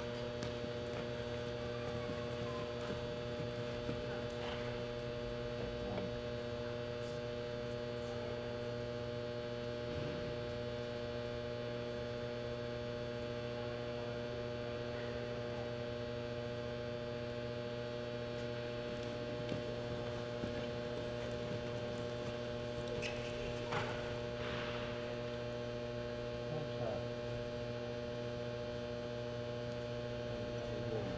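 Steady electrical mains hum with a stack of overtones throughout, with a few faint knocks about three-quarters of the way through.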